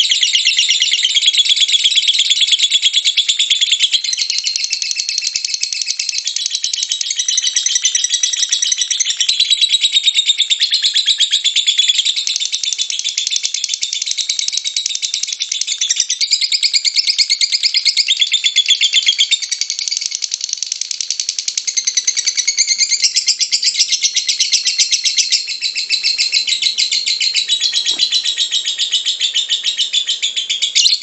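Lutino Fischer's lovebird singing a long unbroken 'ngekek': a rapid, shrill, rattling chatter of calls that runs on without a pause.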